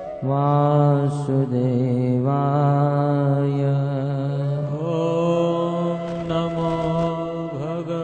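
A man's voice chanting a devotional mantra in long, held notes, with a steady musical drone beneath it.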